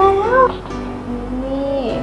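A woman's voice drawing a word out in a long sing-song tone: rising at first, then held, then falling away near the end.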